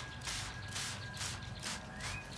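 Hand-pump spray bottles squirting watered-down tempera paint onto paper: a quick, even run of short sprays, about three a second.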